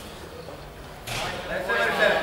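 Quiet hall ambience, then about a second in a rise of noise and raised men's voices, shouting toward the grapplers, that carries on past the end.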